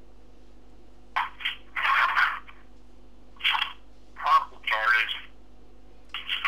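A voice heard through a small speaker, thin and tinny with no low end, in a few short bursts of speech over a steady faint hum.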